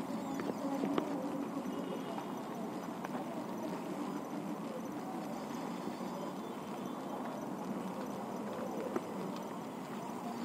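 Steady background noise with a few scattered light clicks and knocks, from a handheld phone being carried along as its holder walks.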